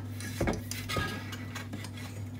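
A couple of faint light clicks as a spirit level and a metal wall-light bracket are set against a wall, over a steady low hum.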